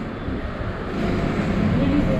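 Faint, indistinct voices over a steady low background rumble.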